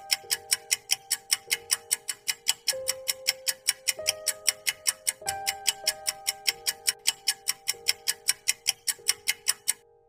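Quiz countdown timer effect: a clock-like tick about four times a second over a soft, slowly changing musical tone, cutting off suddenly as the count reaches zero.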